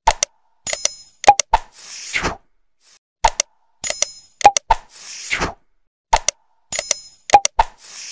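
Animated like-and-subscribe button sound effects: sharp mouse-click sounds, a bright bell-like ding and a falling whoosh. The sequence plays three times, about every three seconds.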